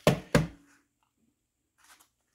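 Two wet thuds of crappies against a stainless steel sink, about a third of a second apart. The second thud rings briefly.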